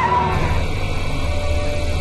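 Film-trailer soundtrack: a steady low rumble, with a faint held tone coming in a little after a second.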